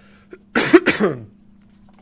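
A man coughing twice in quick succession, about half a second in.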